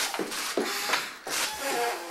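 A young child blowing at lit birthday candles in two short, breathy puffs, about a second apart, with voices in between.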